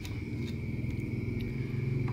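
A low, steady mechanical rumble, like an engine running, that grows slightly louder, over a faint steady high whine, with a few faint clicks.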